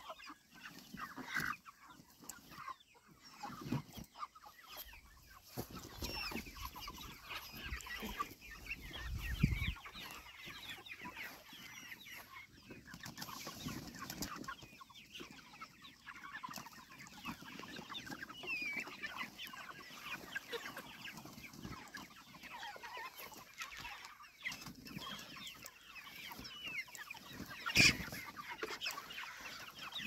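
A flock of chickens in a chicken tractor calling with many short, scattered clucks. A low rumble and a few knocks come from the pen being shifted across the grass, the loudest a sharp knock near the end.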